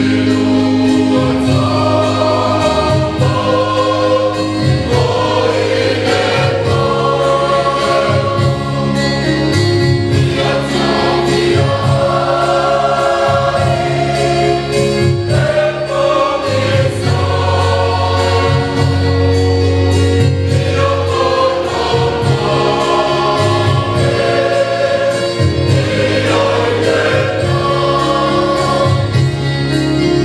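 Mixed church choir of men's and women's voices singing a Samoan hymn in parts, with long held notes.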